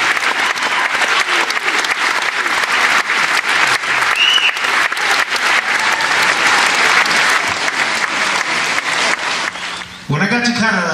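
Live concert audience applauding, a dense clatter of many hands clapping that dies away near the end.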